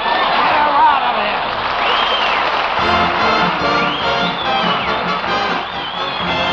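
Studio audience laughing and applauding at the end of a sketch, with an orchestra striking up a musical bridge about three seconds in and playing on over the applause.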